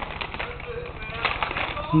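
Light clicks and taps of a baby's hand on a plastic high-chair tray as he picks up food, with faint, brief voices underneath.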